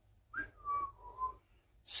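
A man whistling three short notes, each a little lower than the one before.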